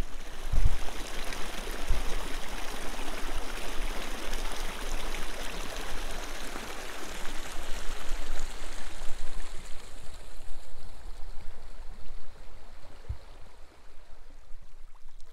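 Shallow creek running over stones: a steady rush of water that eases off toward the end. A few dull low thumps sit under it, the strongest about half a second in.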